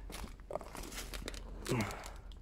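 Faint handling noise: rustling and crinkling with a few small clicks as a hand moves over a motorcycle's seat and the phone is handled. Near the end comes a short low vocal sound that falls in pitch.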